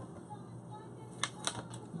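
Quiet kitchen room noise with a few light, sharp clicks about a second in.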